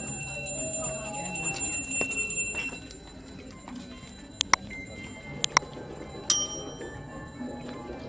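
Bell-like metallic ringing: steady high tones, then a few sharp strikes with ringing around the middle, over a low murmur of voices.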